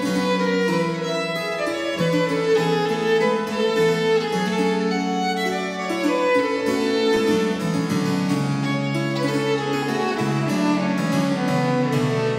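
Baroque violin playing a bowed melody in sustained notes over a harpsichord accompaniment.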